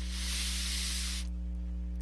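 Steady low electrical hum in the recording, with a soft hiss over it for about the first second that then stops, leaving only the hum.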